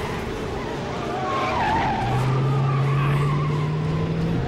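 Car tyres squealing in a skid, a wavering screech over a steady rush of engine and road noise. A low steady hum comes in about halfway through.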